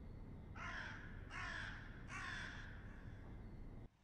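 A bird calling three times, each call about half a second long and under a second apart, over a faint steady low rumble of outdoor background that cuts off abruptly just before the end.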